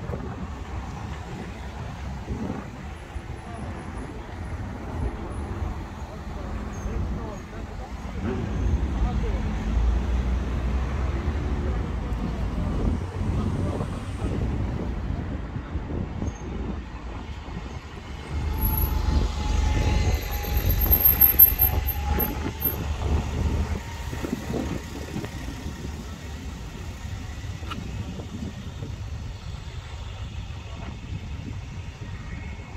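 Road traffic passing on a town main road: one vehicle goes by about eight seconds in, then a single-decker bus passes, louder, around twenty seconds in, with a steady whine over its rumble.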